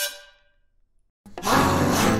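A held accordion chord from a live folk band dies away, followed by a gap of silence; about a second and a quarter in, upbeat music begins.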